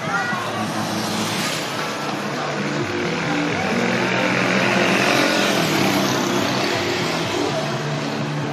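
Motorcycle engine passing close along the road, swelling to its loudest about halfway through and then easing off, over music and crowd voices.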